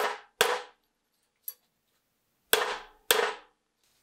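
Ball-peen hammer striking a steel punch on a steel bench block, working the knife's metal guard: four sharp metallic blows, each with a short ring. Two come right at the start, then a faint click, then two more near the end.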